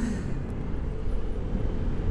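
Vespa GTS 125 scooter's single-cylinder four-stroke engine running while riding, heard from the rider's seat as a steady low rumble mixed with road noise.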